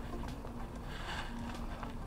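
Quiet street ambience: a steady background hush with a faint low hum and a few soft taps.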